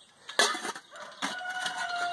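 A clink of stainless steel camp cookware about half a second in, then a rooster crowing in the background, one held call from about a second in to the end.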